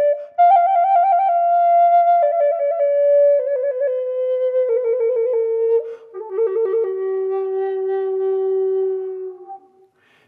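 Native American flute playing trills down the scale: on each note a finger flutters rapidly between two neighbouring pitches, then the note is held, stepping lower each time. It ends on a long steady low note that fades out shortly before the end.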